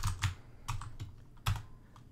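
Typing on a Razer Huntsman keyboard with opto-mechanical purple switches: about five separate keystrokes, spaced irregularly, as a line of code is typed.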